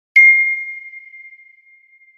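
A single bright ding sound effect, struck about a tenth of a second in and ringing on one high tone that fades away over about two seconds.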